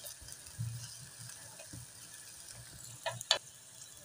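Mutton in water coming to a boil in an aluminium pot on a gas burner: faint bubbling and stirring with a metal ladle, and two quick knocks of the ladle against the pot near the end.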